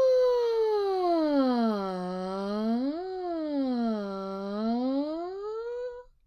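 A woman's voice singing one unbroken "ah" that slides from high down to low, rises part way, dips low again and climbs back up to high at the end: a vocal pitch-glide exercise following a path lower and higher.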